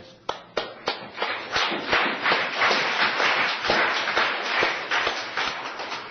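A room of people applauding: a few single claps, then the group joins in and the clapping thickens, easing off near the end.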